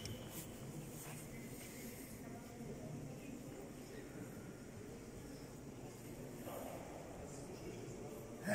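Quiet, steady background of a large sports hall with faint, distant voices, one of them a little clearer about six and a half seconds in.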